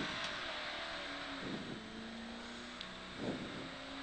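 Mercedes 500SLC rally car's 5.0-litre V8 heard from inside the cabin, running at a fairly steady pitch under road and tyre noise, getting slightly quieter over the few seconds.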